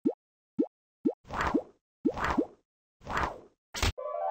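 Cartoon sound effects: four short, quick 'bloop' pops, each rising in pitch, then three longer swishes, each with a rising tone inside it, and a brief sharp hit just before the end. Dead silence lies between the effects.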